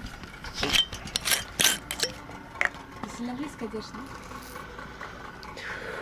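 Several sharp clinks and knocks of glassware and tableware being handled in the first few seconds, as a bottle of rum is opened for a first taste.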